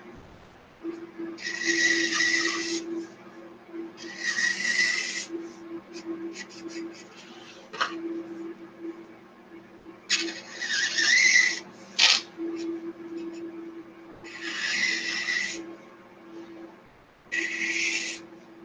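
Felt-tip marker rubbed across paper in long strokes, five squeaky strokes of about a second each, with a couple of sharp clicks between them.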